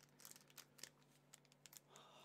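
Near silence with faint, scattered clicks and crinkles of a foil trading-card booster pack and cards being handled.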